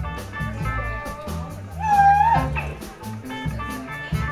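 Live blues band playing: electric guitar lead over bass and drums, with a loud bent note that swells and falls back about halfway through.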